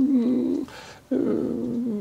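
A man's drawn-out hesitation hum with closed lips ("mmm"), a short breath about halfway, then a second long hum as he searches for his next words.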